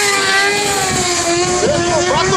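Sport motorcycle engine held at high revs during a burnout, its rear tyre spinning in smoke: one steady high engine note that sags slightly and then holds. Crowd voices come in near the end.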